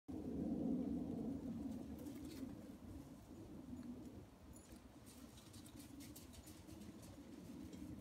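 Dogs wrestling and tugging at a blanket on gravel, with scuffling and light ticks of paws and bodies. A low, rough sound is loudest in the first couple of seconds and fades out by the middle.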